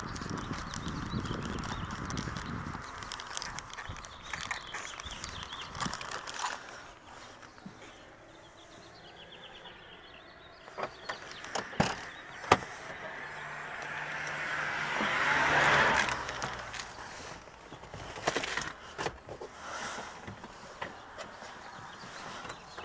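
Footsteps on pavement with the rustle of a handheld camera, a few sharp knocks about halfway through, and a passing car's tyre and engine noise swelling and fading a few seconds later.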